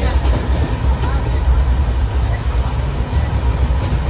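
Indian Railways express sleeper coach heard from inside while the train runs: a loud, steady low rumble with a rushing noise of the moving train.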